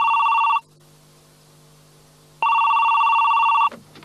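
Telephone ringing with an electronic warbling ring: one burst ending about half a second in, then a pause, then a second burst of about a second and a quarter that cuts off shortly before the end as the call is answered, followed by a few faint clicks.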